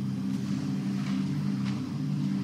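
Background music score holding a low, steady drone of several sustained notes.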